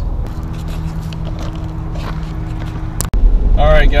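A nearby truck engine idling with a steady hum, with light clicks and scuffs of footsteps on gravel. About three seconds in it cuts abruptly to a louder, low road rumble inside the moving truck's cab.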